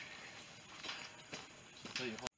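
Faint outdoor background with a few soft taps, about a second in and again near the end.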